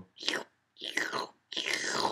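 A voice making three whispered, slurping "shloop" sounds, an imitation of a family slurping soup; the last one is the longest.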